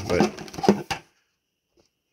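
A man says a word, with clicks and crinkling of a clear plastic RC car body shell and its bagging being handled, then the sound cuts off to silence about a second in.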